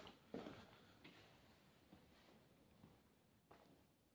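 Near silence: faint room tone with a few soft, short knocks.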